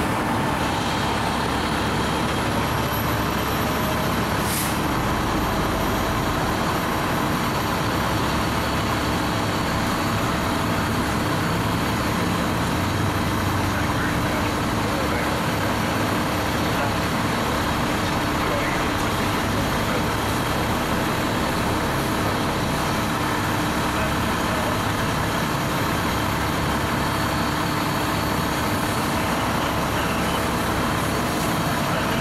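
Fire apparatus engine and pump running steadily, with a continuous hiss, while water is put on a burning car.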